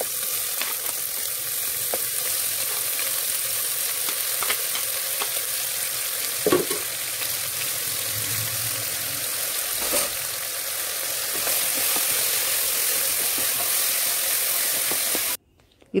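Chopped onions sizzling in hot oil in an aluminium pressure cooker: a steady frying hiss with a few light knocks, cut off abruptly near the end.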